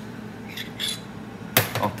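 A metal spoon spooning brown shrimps onto a plate of cod: a few soft scrapes, then one sharp tap about one and a half seconds in.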